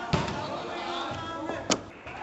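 Two thuds of a football being struck or hitting the hall's side boards, about a second and a half apart, over echoing indoor-hall background noise.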